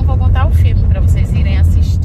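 Steady low rumble of a moving car heard from inside the cabin, under a woman talking.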